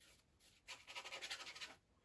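Paintbrush scrubbing acrylic paint in quick, short, scratchy strokes for about a second in the middle, faint.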